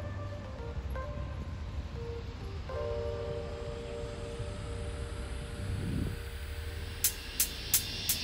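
Quiet background music of soft sustained notes over a low rumble, with a few sharp ticks near the end as a beat comes in.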